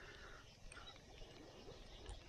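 Near silence: faint outdoor background with a few soft, brief high-pitched sounds near the start and around the middle.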